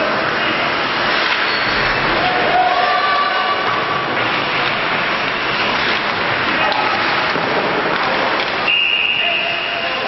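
Ice hockey arena din: a steady noisy wash of crowd voices and play on the ice, with brief shouts. A referee's whistle blows for about a second near the end as play stops at the goal.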